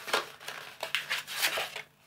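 Card packaging and paper being handled: a string of irregular crinkling, rustling scrapes that cuts off suddenly just before the end.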